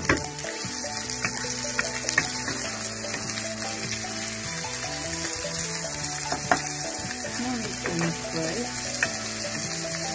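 Sliced onions sizzling steadily in hot coconut oil in a wok while being stirred with a wooden spatula, with a few sharp knocks of the spatula against the pan.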